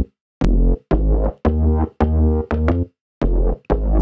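ZynAddSubFX synthesizer bass patch playing a looped bassline of short, low notes rich in overtones, about two a second, each starting with a sharp click. There is a brief pause about three seconds in.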